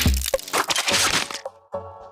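TV ident soundtrack: a loud cracking crash effect for about the first second and a half, over music. It is followed by a short run of bright pitched jingle notes.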